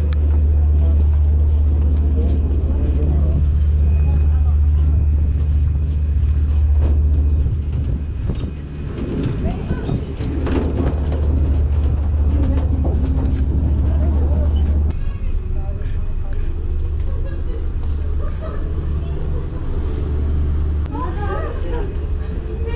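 Ferry ambience: a steady deep rumble that drops in level twice, with indistinct voices of people talking in the background, most clearly around the middle and near the end.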